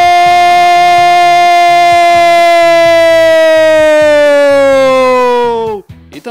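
A football commentator's long, drawn-out goal cry of "gol", held on one steady pitch for about six seconds. The pitch sags and the cry breaks off near the end.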